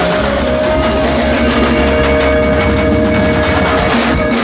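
Live jazz-blues band playing loudly: a long held note sustained over rapid drum and cymbal strikes, the kind of build-up that closes a song.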